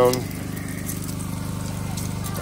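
Small portable generator running steadily with a low, even hum.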